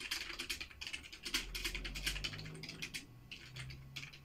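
Typing on a computer keyboard: a fast run of keystrokes for about two seconds, a brief pause, then a few more keys near the end.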